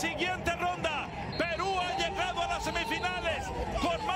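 A man shouting excitedly in Spanish-language football commentary, with one long drawn-out shout of about two seconds in the middle.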